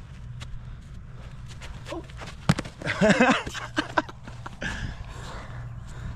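A single sharp smack of a football caught in the hands, followed by a man's exclamation and laughter, over a low steady hum.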